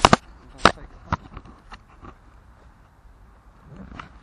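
Hard pieces of collected litter knocking together as they are packed into a bag. There are three sharp knocks in the first second or so, then a few lighter taps.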